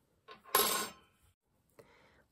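A steel knitting needle set down on a wooden tabletop: a light tap, then a short sharp clatter about half a second in.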